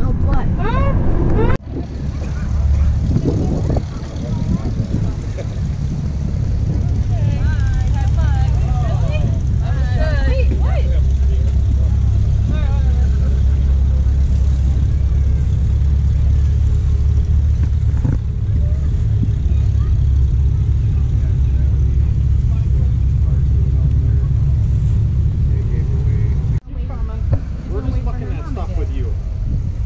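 Steady low rumble with people talking in the background. The sound changes abruptly about a second and a half in and again near the end.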